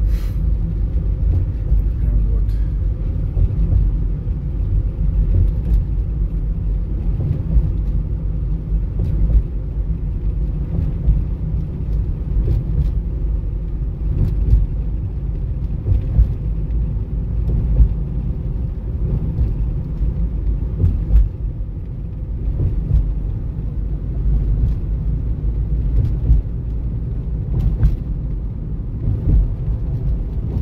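Steady low rumble of a car's tyres and engine, heard inside the cabin while driving slowly, with a few faint clicks.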